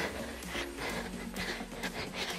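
Quiet background workout music under a person breathing hard from exertion during scissor jumps.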